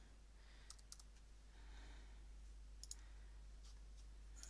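Faint computer mouse clicks over near-silent room tone: a quick run of three about a second in, two close together near three seconds, and one more near the end.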